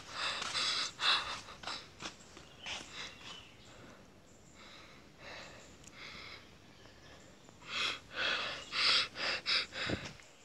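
A person breathing hard close to the microphone in uneven puffs, quieter in the middle and louder and quicker near the end.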